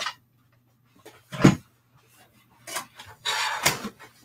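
Clear plastic cutting plates from a mini die-cutting machine being handled and separated: one sharp clack a little over a second in, a few softer knocks, then a brief scraping slide near the end.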